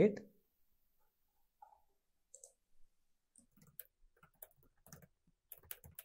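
Faint computer keyboard typing: irregular key clicks starting a little past halfway, after a couple of single clicks.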